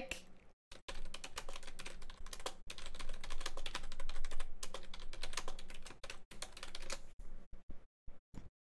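Fast typing on a computer keyboard: a dense run of key clicks starting about a second in, with a couple of short pauses.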